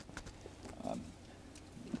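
Faint light knocks and handling noises of objects being moved about inside a car cabin, with a quiet hesitant "um" about a second in.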